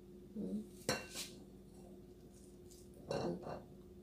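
Saucepan and utensils clinking lightly as the pan is lifted and tipped to pour, with one sharp clink about a second in, over a faint steady hum.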